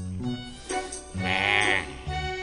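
Background music from an animated short's score. A little over a second in, a high, quavering note joins it and lasts most of a second.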